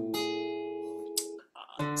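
Acoustic guitar chord ringing out and slowly fading, then damped about one and a half seconds in; a new chord is strummed just before the end.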